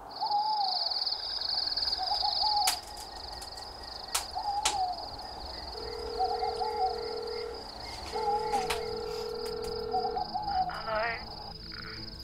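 Night ambience: a steady high trill of crickets, with a bird calling short curved notes every second or two. There are two longer, lower droning tones in the second half and a few sharp clicks.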